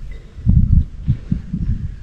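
Low, irregular rumbling thumps on the microphone, the kind of buffeting that wind or rubbing against the mic makes.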